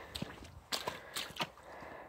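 Footsteps on wet, muddy ground: several short, sharp steps about a quarter of a second apart, uneven.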